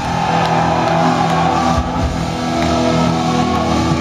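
Black metal band playing live, loud, with long held notes ringing through the hall, recorded from within the crowd.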